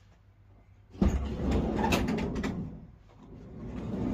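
A Peugeot Boxer van's sliding side door rolling along its runner: it starts suddenly about a second in and runs for about a second and a half, then after a short lull it rolls again, growing louder toward the end.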